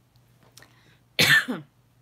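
A woman coughs once, a short sharp cough a little over a second in.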